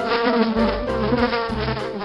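Housefly buzzing: a steady drone that wavers slightly in pitch.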